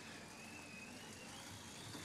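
Bicycle rollers running faintly and steadily under a road bike's spinning tyres, with a thin, slightly wavering high whine.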